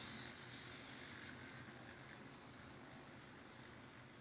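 A hexapod robot's hobby servos whirring and its feet scuffing on carpet as it turns in place. The sound is faint, strongest in the first second or so, and fades away as the robot comes to a stop.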